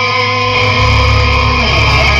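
Melodic death metal band playing live through a PA: distorted electric guitars over bass and drums, with the low end growing heavier about half a second in.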